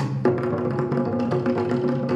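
Tahitian ote'a drumming: wooden to'ere slit drums striking rapidly. Spaced accented hits give way about a quarter second in to a dense, fast continuous roll.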